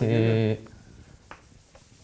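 Chalk on a blackboard: a few faint taps and scratches of writing, following a short drawn-out 'ah' from a voice.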